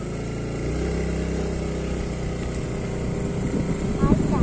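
Small motorbike engine running steadily at low revs, picking up slightly a little under a second in.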